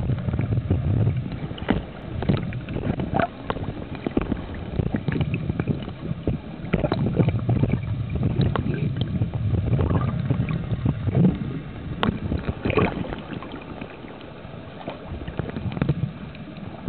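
Muffled water noise from an underwater camera: a continuous low swirling rumble of moving water and bubbles, with many scattered small clicks and crackles and one sharp click about twelve seconds in. It drops a little in level near the end.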